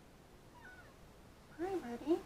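Kitten meowing: a faint, high chirp about half a second in, then a short, louder meow that rises and falls in pitch near the end.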